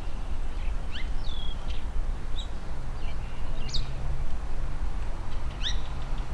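Birds calling outdoors with short, high chirps and quick whistled notes scattered through, over a steady low rumble.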